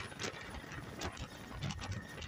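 Military transport helicopter running on the ground, heard as an irregular mechanical clatter.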